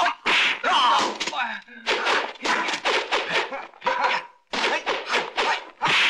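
Rapid series of dubbed kung fu film fight sound effects: sharp whacks and thuds of blows and blocks, about three or four a second, mixed with the fighters' shouts and grunts, with a brief pause a little past halfway.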